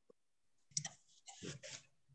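A single sharp click about three quarters of a second in, followed by a few faint, short noises over a quiet microphone.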